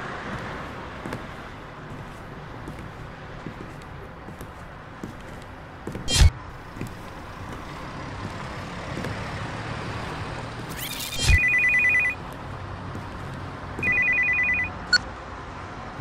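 A phone ringing twice with a warbling electronic ring, each ring lasting under a second, the first about eleven seconds in and the second about three seconds later. Steady street traffic noise runs underneath, with a single sharp thump about six seconds in.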